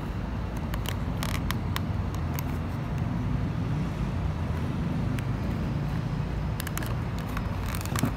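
Clear plastic blister packaging handled and turned in the hands, giving a few light crackles and clicks, over a steady low background rumble.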